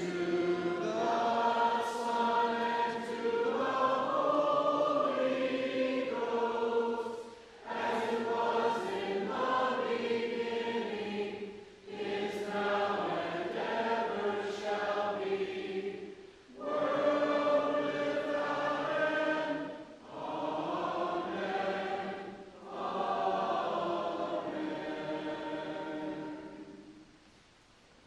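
A church congregation singing together, with a sung response in slow phrases of a few seconds and short breaths between them.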